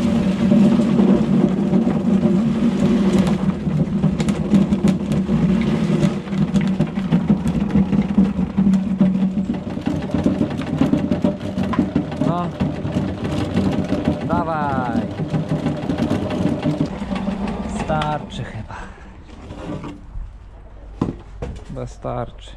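Electric turnip chopper running with a steady hum as the last turnip scraps are pushed through its blades. The hum dies away near the end, followed by a few light knocks.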